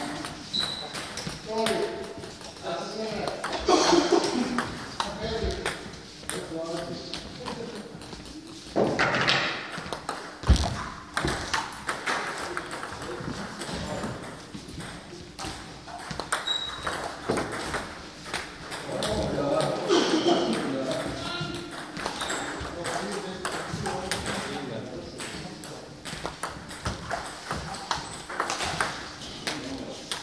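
A table tennis ball clicking repeatedly off rubber paddles and the table during serve-and-return practice, with people's voices mixed in.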